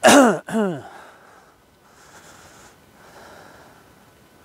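A man coughing twice in quick succession in the first second, each cough trailing off with a falling voiced tone.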